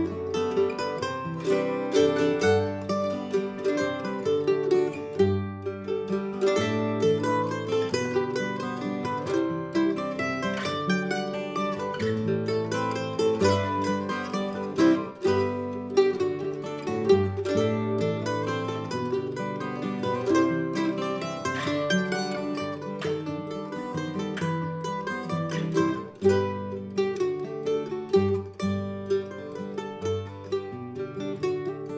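F-style mandolin picking the melody of a waltz, with acoustic guitar accompaniment underneath.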